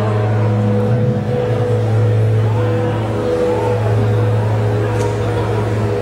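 Live electric guitar and bass through stage amps holding a loud, steady low drone, with sustained higher guitar notes that come and go above it and no drumbeat. A single sharp click comes about five seconds in.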